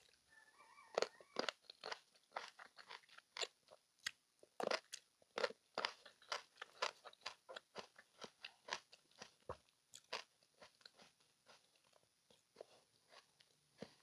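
Close-miked chewing of seeded grapes: a run of short, crisp crunches and wet mouth clicks, faint, stopping about eleven seconds in.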